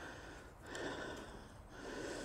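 A man's breathing, heard close on a clip-on microphone: a soft breath about half a second in and a shorter one near the end.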